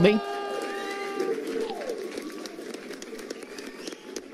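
A celebration sound effect played with an on-screen confetti animation: a held pitched note for about a second, then a falling whistle-like glide, over a faint crowd-like hiss.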